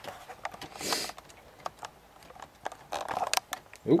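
Light plastic clicks and rattles of LEGO pieces being handled as the model's crane is lowered, with a short rustle about a second in and a quick run of clicks near the end.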